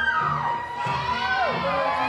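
Spectators cheering and whooping over slow swing music, with many overlapping rising and falling shouts that grow thicker about halfway through.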